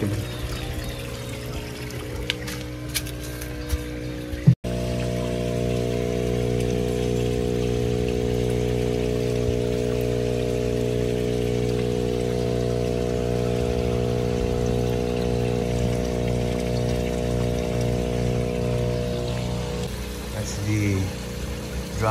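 Water pouring and trickling into a backyard fish pond from its filter, under a steady hum. The hum starts with a sharp click about four and a half seconds in.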